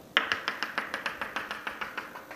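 Chalk tapping against a chalkboard in a rapid, even series of sharp strokes, about seven a second, as a dashed line is drawn down the board. The tapping starts a moment in.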